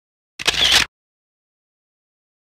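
A camera shutter click, one short snap about half a second in, with dead silence around it. It is the same shutter sound that recurs every couple of seconds, as over a series of photos.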